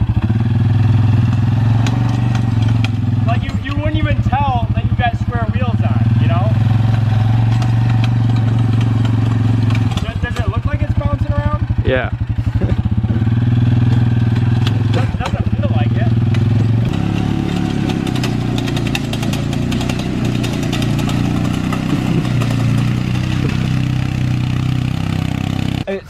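Suzuki KingQuad ATV's single-cylinder engine running under load as the quad is driven on square wheels, its note dipping and recovering a few times and turning choppier in the second half.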